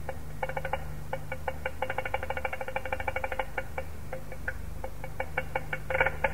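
Tavil drum strokes in quick patterns, with a dense fast run through the middle, from an old concert recording with a steady low hum underneath. No held melody notes are heard.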